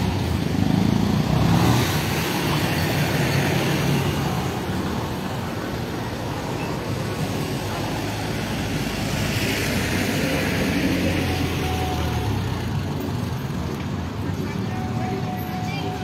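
Town street traffic: cars and motorcycles passing in a steady wash of road noise, with one vehicle swelling louder about nine seconds in.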